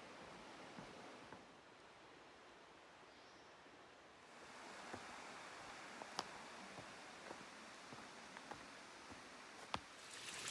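Near silence: a faint outdoor hiss with a few soft, scattered ticks in the second half.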